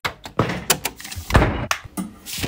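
Raw, unprocessed recordings of household objects in quick succession: clacking keys of a Commodore 64 keyboard, then a heavy low thud about a second and a half in, followed by a sharp click.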